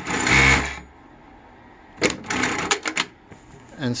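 JUKI DDL-9000C industrial lockstitch sewing machine running for under a second and stopping, as the pedal is heeled back to trigger the automatic end-of-seam thread trim. About two seconds in comes a shorter scuffing noise as the fabric is slid out from under the presser foot.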